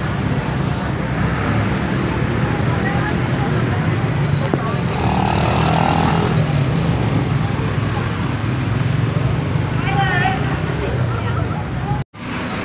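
Slow street traffic with motor scooter engines running close by and a steady engine hum, over the chatter of a crowd.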